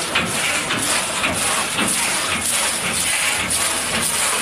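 Water spraying under pressure inside a fully pneumatic SMT stencil cleaning machine: a steady, loud rush of spray with a rapid flutter.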